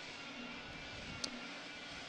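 Faint, even background noise of a hockey arena during a stoppage in play, a low crowd hum with no clear single source, with one faint click about a second in.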